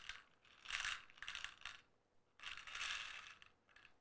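Red insulated crimp terminals poured from one clear plastic box into another, rattling against the plastic and each other in two pours of about a second each.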